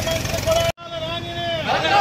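A group of men shouting political slogans together, with a sudden break in the sound about a third of the way in before the shouting resumes.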